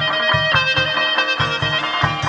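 Chầu văn ritual music in an instrumental passage: a sustained, held melody line over a steady drum beat of about four strokes a second.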